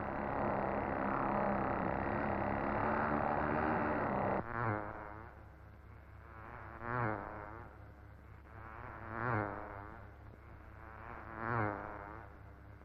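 Model racing car's small two-stroke engine buzzing at high revs: steady and loud at first, then, after a sudden drop about four seconds in, swelling and fading about every two seconds as the car laps the track past the microphone.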